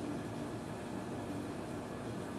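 Steady, even background hiss of room tone, with no distinct strokes or events.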